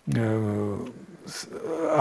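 A man's drawn-out, low-pitched hesitation sound, held steady for just under a second, then a brief hiss and speech starting again near the end.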